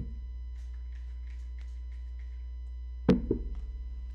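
Two sharp knocks close together about three seconds in, ringing briefly, as an object is knocked or set down on a wooden table while cleaning supplies are handled. Faint rustling comes before the knocks, and a steady electrical hum runs underneath.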